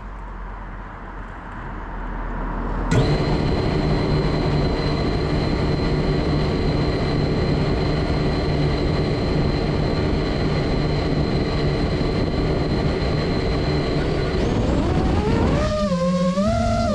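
FPV racing quadcopter's brushless motors spinning up suddenly about three seconds in and idling armed on the ground with a steady whine, then rising in pitch near the end as the throttle comes up for takeoff.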